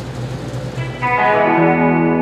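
Electric guitar ringing out a sustained chord, coming in about a second in over low background hum, as a band's song begins.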